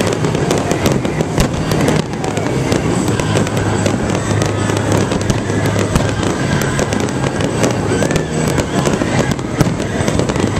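Fireworks display: aerial shells bursting one after another, with many sharp bangs and crackles over a continuous din.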